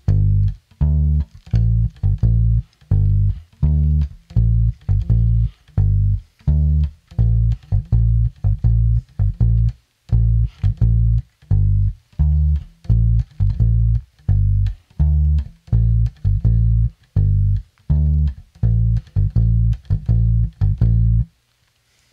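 Gibson Thunderbird electric bass played solo: a reggae-style bass line of short, separated plucked notes with gaps between them, a few a second, stopping about a second before the end.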